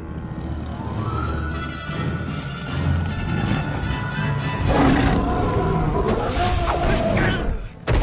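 A cartoon lion's growling and roaring, with dramatic background music underneath. The growls get louder in the second half, and a sharp hit comes near the end.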